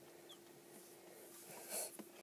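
Near quiet: a faint steady hum from the incubator, with a short breathy sound near the end.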